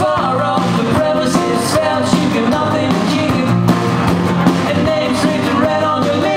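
A man singing over acoustic guitar strummed in a steady rhythm, in a live acoustic performance.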